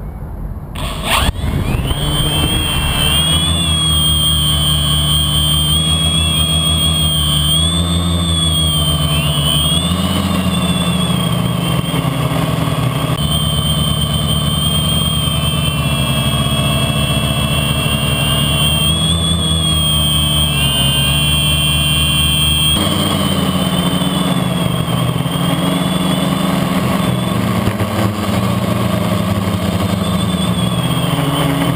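OFM Hoist-700 quadcopter's brushless motors and propellers spinning up in the first couple of seconds and then running in flight, heard from the GoPro mounted on its frame. It is a steady drone with a high motor whine, its pitch wavering up and down as the throttle changes.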